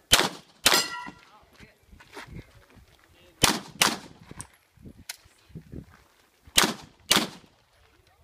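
Pistol fired in three quick pairs, six shots in all, each pair a fraction of a second apart. After the second shot there is a brief metallic ring, as of a steel target being hit.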